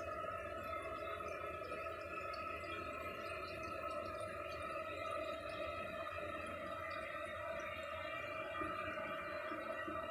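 1989 Kohler Wellworth toilet running after a flush with its siphon jet held shut by hand: water running steadily into the bowl with a steady whine over it.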